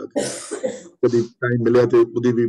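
A man coughs twice, a longer cough and then a short one, before speaking again.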